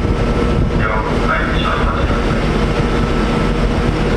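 Steady low drone of a research ship's engines and machinery running, with several fixed hum tones under a rushing haze.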